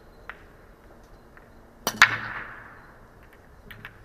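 Chinese eight-ball break shot: about two seconds in, a sharp crack of the cue tip on the cue ball, followed a split second later by a louder crack as the cue ball hits the rack and the balls clatter apart. A few lighter clicks of balls knocking together follow near the end.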